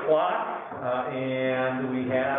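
A voice in long, held, chant-like tones.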